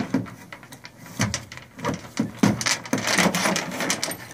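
Irregular clanks and rattles of a steel trap chain and a J-hook tool being handled on a metal truck bed.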